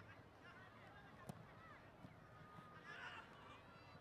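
Near silence: faint field ambience with a few distant, wavering calls and one short click.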